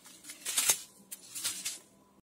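Clear plastic packs of nail-art rhinestones rustling and crinkling as they are handled and pulled apart, the small stones shifting inside. A few short bursts, the loudest about half a second in.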